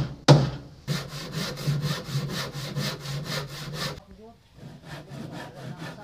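Hand tools on the boat's wooden planking: a hard hammer blow on the wood just after the start, then about three seconds of quick, even sawing strokes, roughly five a second. Fainter strokes continue near the end.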